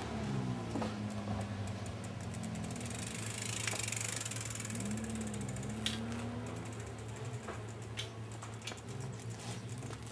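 Bicycle freewheel hub ticking rapidly as the bike coasts, over a low steady drone.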